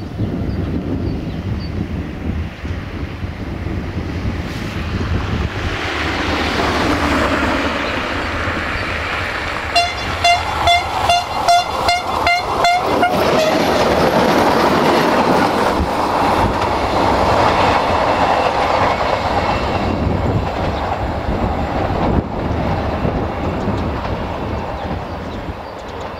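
Siemens Desiro VT642 diesel multiple unit approaching and passing at speed, its running sound building and then fading as it moves away. As it passes, about ten seconds in, there is a quick run of about nine evenly spaced, ringing clacks from its wheels.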